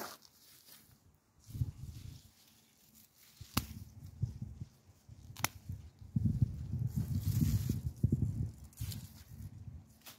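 Hand pruning shears snipping broad bean stems, a few sharp clicks spread through the clip, amid dull rustling of the bean plants being gripped and cut close by, busiest in the second half.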